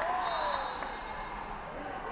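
Echoing sports-hall background: distant voices with scattered sharp knocks, likely wrestlers' bodies and shoes hitting the mats. A brief high steady tone sounds about a quarter second in.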